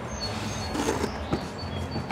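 Small birds chirping faintly in short high notes, with a few light clicks as the body pins are pulled and the plastic body is lifted off a 1/6-scale Axial SCX6 rock crawler.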